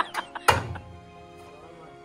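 Hammer striking the sheet-metal front inner wing of a stripped VW Golf Mk2 body shell: a few quick knocks, then one loud blow about half a second in with a brief metallic ring. Background music underneath.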